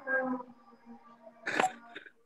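Stray sound from open microphones on a video call: a voice trailing off at the start, a faint held tone, and a short sharp noise about one and a half seconds in.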